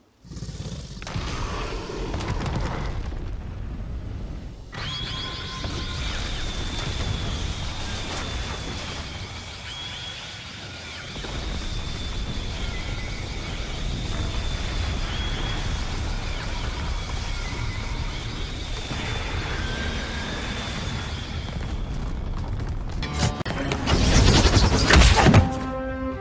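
Black Canary's sonic scream sound effect: a long, steady, high-pitched shriek over a deep rumble and dramatic film score. It ends in a loud crash a couple of seconds before the end.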